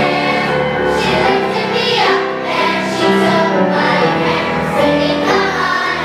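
A children's choir singing in unison, with piano accompaniment.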